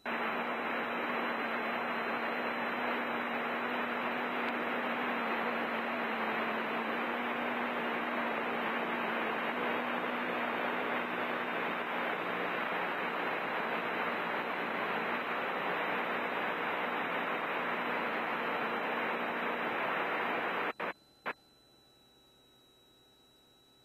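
Steady static-like hiss of cockpit noise coming through an aircraft headset intercom with the mic keyed open, with a faint low drone underneath. It switches on abruptly and cuts off sharply about 21 seconds in, followed by two short clicks.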